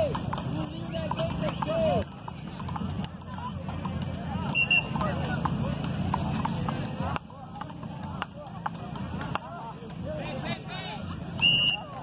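Indistinct voices of people on the beach over a low steady rumble, with scattered sharp knocks of wooden frescobol paddles hitting a rubber ball; the loudest knock comes near the end.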